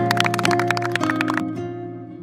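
Hands clapping quickly over acoustic guitar music; the clapping stops about one and a half seconds in, leaving the guitar notes ringing and fading.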